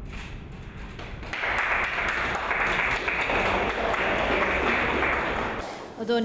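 A small audience applauding. The clapping swells about a second in, holds steady, and dies away near the end.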